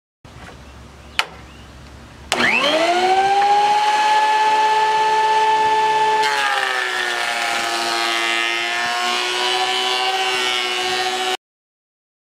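Ridgid benchtop thickness planer: after a click, the motor starts with a quickly rising whine and settles into a steady high whine. A few seconds later the pitch drops and a rougher cutting noise joins as a board feeds through the cutterhead, loading the motor. The sound cuts off suddenly near the end.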